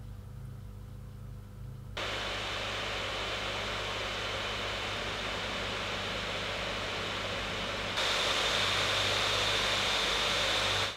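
Acer Triton 500 gaming laptop's cooling fans. For the first two seconds, at idle, there is only a faint low hum with no fans running. The fans then cut in with a steady rush of air under a combined CPU and GPU stress test at default fan speed. About eight seconds in they step up louder, with a high whine, at maximum fan speed in turbo mode.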